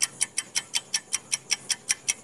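Ticking sound effect of a quiz countdown timer: rapid, evenly spaced clock-like ticks, about five a second.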